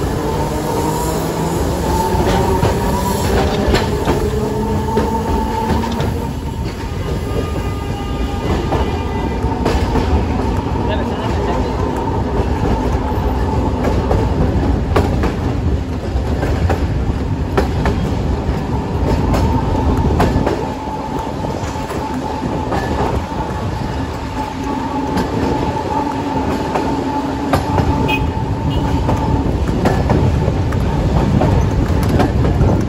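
Electric tram running along street track: a steady rumble of wheels on the rails, with a rising whine in the first few seconds as it gathers speed.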